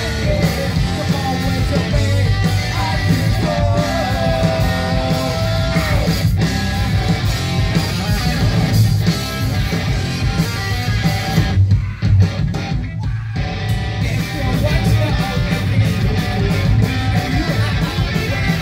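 A rock band playing live through a club PA: drums, distorted electric guitar and bass with a singer on a handheld microphone, heard from within the crowd. The cymbals and guitar drop out briefly about two-thirds of the way through before the band comes back in.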